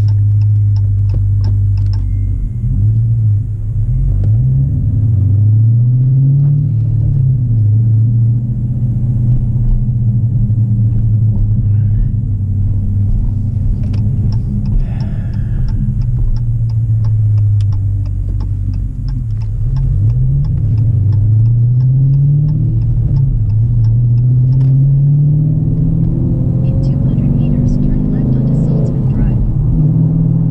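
A car's engine heard from inside the cabin while driving. It runs steadily for stretches, and its pitch climbs and falls back several times as the car accelerates.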